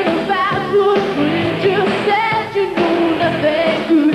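A live pop-rock band playing, with a woman singing the lead melody over a steady drum beat.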